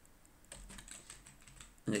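Faint, scattered clicks of computer keyboard keys being typed, from about half a second in.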